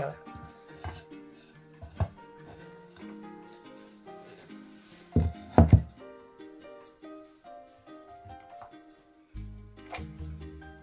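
Background music, with a few loud knocks about five seconds in: a plastic cake mould set down upside down on a slate board and tapped to release the cake.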